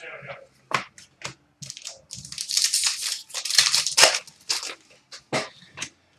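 Trading card pack wrapper crinkling and cards being handled, a run of sharp crackles and snaps that is densest in the middle.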